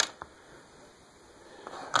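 Small plastic clicks as buttons are pulled off an opened RC quadcopter controller: a sharp click at the start and a fainter one just after, quiet handling, then another click near the end.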